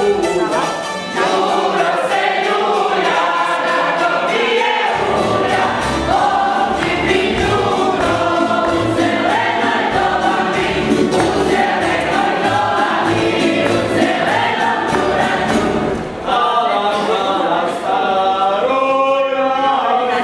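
Folk ensemble of men and women singing a song together. A deep accompaniment joins about five seconds in and drops out near sixteen seconds, leaving the voices on their own.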